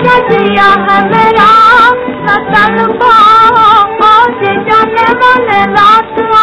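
A woman singing a Hindi film song melody with a wavering, ornamented line, over instrumental accompaniment.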